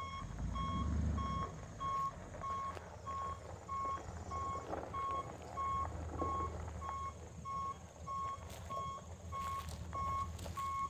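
A truck backup alarm beeping steadily about twice a second over a dump truck's engine running, which swells briefly in the first second or so.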